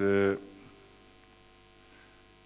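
A man's voice holding the end of a spoken word for a fraction of a second, then a pause filled only by a steady electrical mains hum.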